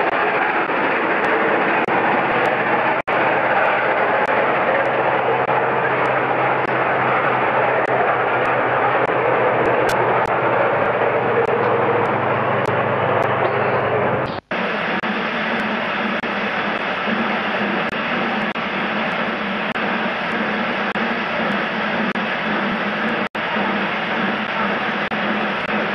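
Steam-hauled train of LNER A3 Pacific Flying Scotsman pulling away past the camera, a loud, dense rush of steam and train noise on old camcorder audio. About two thirds of the way in the sound cuts off suddenly and gives way to a steadier sound with a low hum.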